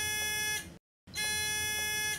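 Bed-exit alarm of a VitalGo Total Lift Bed's scale unit sounding as two steady electronic buzzer tones, each about a second long, with a short pause between them. It signals that the patient's weight has left the bed while the alarm is set.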